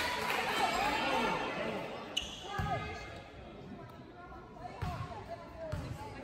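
A basketball bounced three times on a hardwood gym floor, dull thumps spread over the second half, as at a free-throw line. Crowd noise dies away over the first couple of seconds, and scattered voices echo in the large gym.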